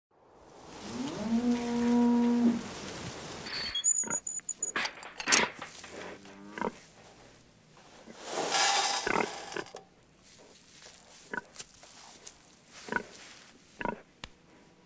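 Barn sounds: a cow moos once near the start. Then a plastic feed bucket knocks and clatters, a pig grunts a few times in straw, and there is a rustling pour of feed or straw.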